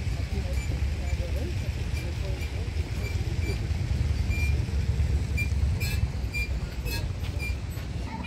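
Wind buffeting the microphone as a low, uneven rumble, with faint voices of people in the background and small high ticks about twice a second.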